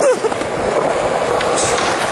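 Skateboard wheels rolling over concrete, a steady rough rumble with a few light clicks.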